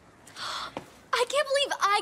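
A short, breathy gasp, then excited talking starting about a second in.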